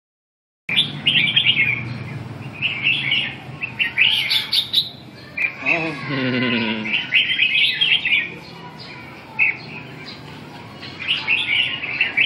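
Caged red-whiskered bulbuls (chào mào) chirping and singing in short, repeated bursts of high notes. A brief, lower, wavering voice-like sound comes in about halfway through.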